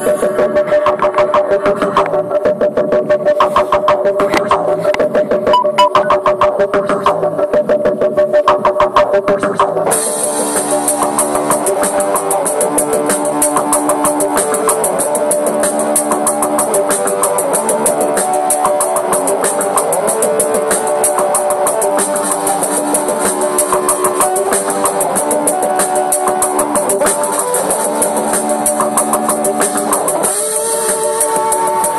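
Electric guitar playing over a steady drum beat. The music grows fuller and brighter about ten seconds in.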